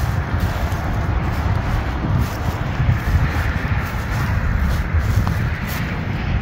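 Wind buffeting the microphone: an uneven low rumble with a steady hiss over it.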